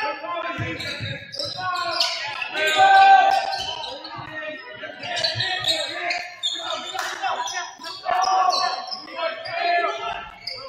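Basketball dribbled on a hardwood gym floor, with sneakers squeaking and players and coaches shouting calls throughout.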